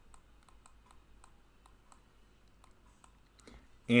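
Faint, irregular light clicks, a few a second, from a stylus tapping a drawing tablet as handwriting is put on screen.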